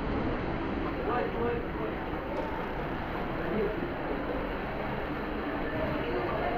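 Steady rushing of water pouring into a waterslide's entry, with people's voices faint underneath.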